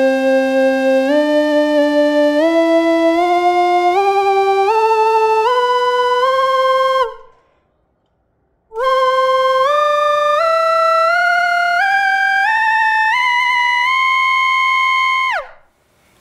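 Synthesized slide-whistle tone from a 3D-printed electronic slide whistle (a flute physical model on a Teensy, driven by breath) playing two phrases that climb in discrete pitch steps, each rising about an octave. The phrases are separated by a pause of over a second. The second phrase holds its top note, then drops in a quick downward glide and cuts off.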